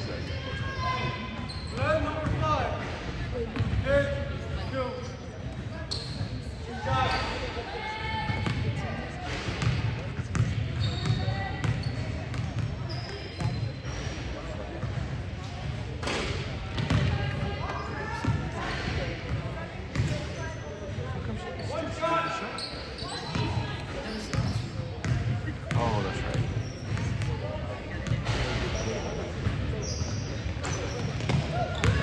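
A basketball bouncing on a hardwood gym floor amid indistinct voices of players, coaches and spectators, all echoing in a large gymnasium.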